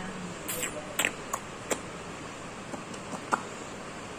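A handful of short, sharp clicks, about five spread over the first three and a half seconds, over a steady background hiss.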